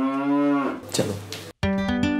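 A cow's single long moo, rising and then falling, dying away just under a second in. A short spoken word follows, then acoustic guitar strumming starts near the end.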